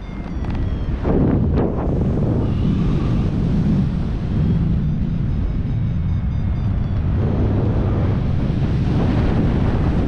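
Wind rushing over a camera microphone in paraglider flight, a loud, steady buffeting that swells about a second in.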